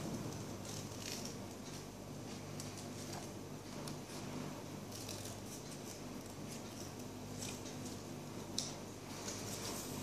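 Small hand scissors snipping through craft paper as a circle is cut out, the paper faintly crinkling between cuts, over a steady low hum. A single sharp click near the end.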